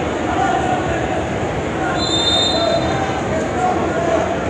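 A referee's whistle gives one steady, high-pitched blast of about a second, starting about halfway through, over the steady murmur of a gym crowd.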